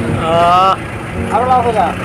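Two drawn-out raised voice calls, the first early and the second in the second half, over the steady hum of an idling vehicle engine.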